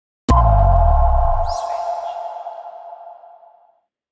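Electronic logo sting: a sudden hit with a deep bass boom, then a two-note ringing tone that fades away over about three seconds, with a brief high swish about a second and a half in.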